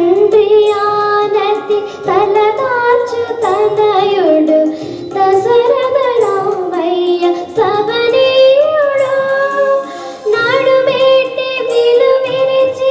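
A girl singing a Telugu devotional film song into a handheld microphone, in phrases of a few seconds with long held, gliding notes and short breaks for breath between them.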